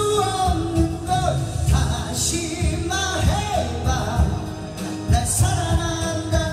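A man singing a Korean trot ballad into a microphone over a karaoke backing track with a steady beat.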